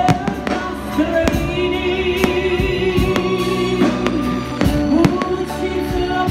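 Fireworks bursting in many sharp bangs, irregular and several a second, over loud music with a singing voice.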